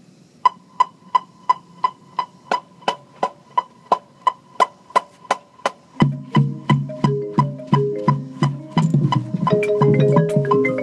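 A metronome click ticks steadily at about three beats a second. About six seconds in, the front ensemble's marimbas come in with low mallet notes over the click, and more keyboard percussion joins near the end.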